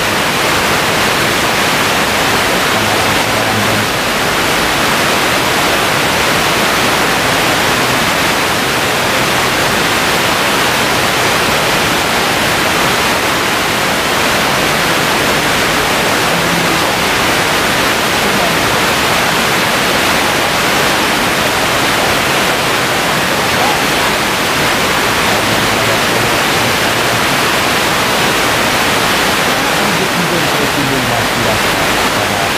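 Loud, steady rushing hiss with no pitch or rhythm.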